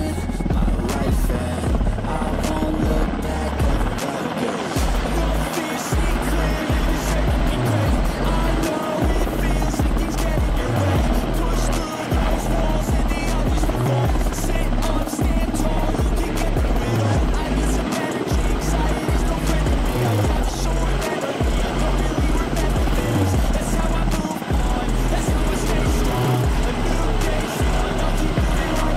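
Background music with a steady beat laid over the rotor noise of a military helicopter hovering low.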